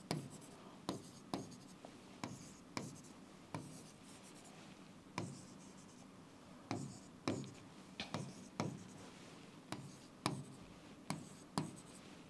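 Chalk on a blackboard: short, quiet taps and scrapes at an irregular pace of one or two a second as many small circles and arrows are drawn.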